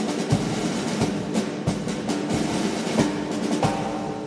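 Orchestral band music in a drum-heavy passage, with repeated percussion strokes over sustained instruments. The passage thins out near the end.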